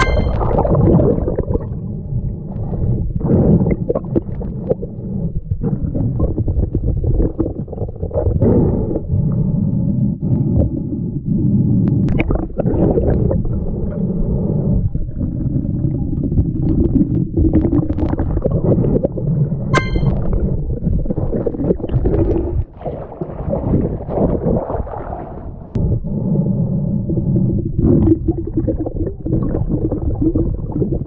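Muffled underwater rumble and water movement picked up by a mask-mounted GoPro while a snorkeler digs bottles from the seabed mud. A few sharp clicks, one near the middle and one about two-thirds through, stand out.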